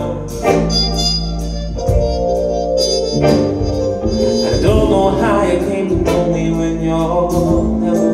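Live soul-ballad band playing an instrumental passage: sustained keyboard chords over bass, electric guitar and drums.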